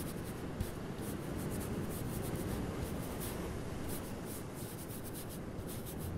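Paintbrush loaded with gouache stroking across watercolor sketchbook paper: a soft, scratchy rubbing made of many short strokes, with a faint click about half a second in.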